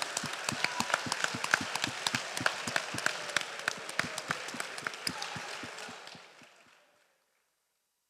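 Applause, many hands clapping in a dense patter that thins and dies away about six seconds in.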